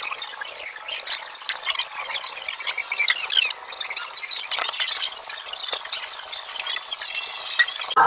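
Dense clatter of dishes, glasses and cutlery clinking, with a thin, tinny sound and no bass.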